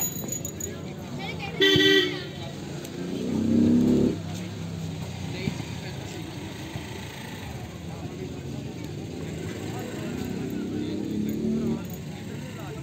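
Outdoor background of voices calling across a football field, with a vehicle horn tooting briefly about two seconds in and road traffic going by.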